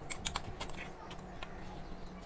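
Spoon scraping and tapping coarsely ground lentil (dal) paste out of a steel mixer-grinder jar into a glass bowl. It makes a quick run of small, faint clicks in the first half second, then a few more about one and a half seconds in.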